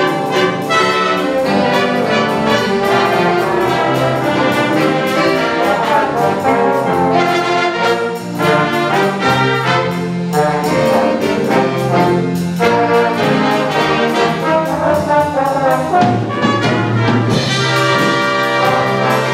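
Student jazz big band playing live: a full ensemble of saxophones, trumpets and trombones over piano, guitar, bass and drums.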